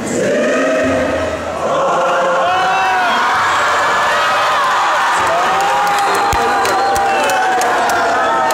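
Large choir singing many voices together, loud and full, with a brief drop in volume about a second and a half in. Voices from the crowd are mixed in.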